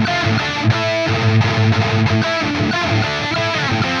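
S by Solar TB4 61W electric guitar played through heavily distorted high-gain amplification: a metal riff of chugging low notes mixed with higher sustained notes that waver with vibrato.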